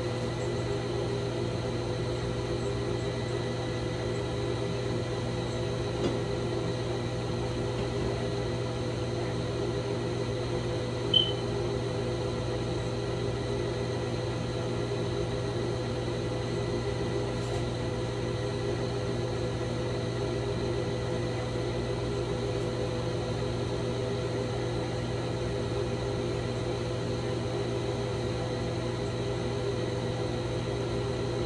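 A steady machine hum with several fixed tones, unchanging throughout. A short high chirp rises out of it once, about eleven seconds in.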